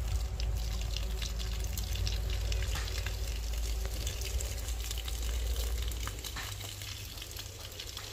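Water running from a garden hose and splashing onto wet soil and plants, a steady crackle of small splashes. A low rumble underneath drops away about six seconds in.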